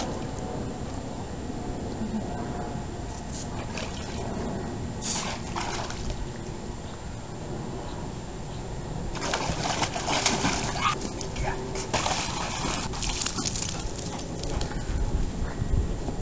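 A chocolate Labrador retriever splashing in the water of a shallow inflatable kiddie pool as she chases a hose spray. There are short splashes about five seconds in and a longer run of splashing from about nine to fourteen seconds, over a steady low rumble.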